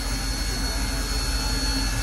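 Steady hiss and low hum of the Union Pacific Big Boy 4014 steam locomotive heard inside its cab, with a thin, steady high whine over it.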